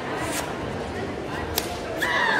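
Karate gi snapping sharply as a kata technique is thrown, one crisp crack about one and a half seconds in, after a fainter snap near the start.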